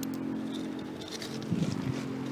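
Small rusty iron fragments and nails being picked off a neodymium fishing magnet, giving a few faint metallic clicks over a steady low background hum, with a brief low sound near the end.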